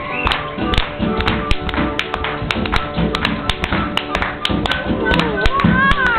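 Tap shoes striking the stage floor in rapid, rhythmic taps, played live over piano and flute. Near the end the flute plays gliding, sliding notes.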